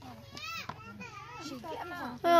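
Children's voices talking and calling out in short high-pitched phrases, over a steady low hum.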